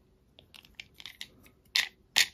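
Small screwdriver turning the centre screw of a plastic toy spinner, loosening it because the spinner was too tight: a few faint clicks and scrapes, with a sharper click near the end.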